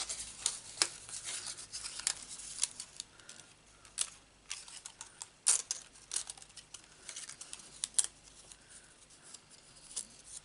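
Cardstock being handled: irregular rustles and sharp ticks as die-cut paper pieces are worked loose from a thin metal cutting die, with the loudest snaps about four, five and a half and eight seconds in.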